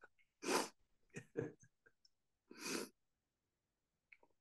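A man's laughter trailing off into two long, breathy exhalations about two seconds apart, with a short laugh sound between them.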